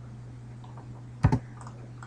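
A quick double click at the computer a little over a second in, over a steady low hum.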